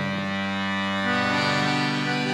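Instrumental passage between sung lines of a Brazilian sertanejo ballad: a held chord that shifts to a new chord about a second in.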